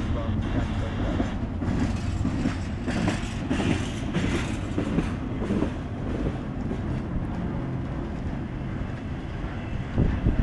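Empty freight cars of a long freight train rolling past close by, their steel wheels rumbling and clattering on the rails. The clatter grows louder and rattlier for a few seconds in the middle.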